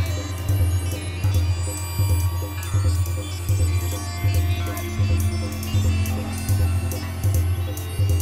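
Live acid techno from hardware synthesizers and a drum machine: a deep bass note pulsing about once a second, with quick hi-hat ticks and synth lines above it.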